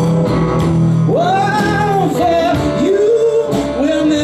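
Live blues trio playing: hollow-body electric guitar, upright double bass and drums. Over the band, a lead line has notes that bend up and hold, once about a second in and again near three seconds.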